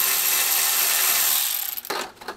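Cordless impact driver spinning a 5 mm Allen screw out of the heater's mounting bracket, a steady whir that winds down and stops near the end.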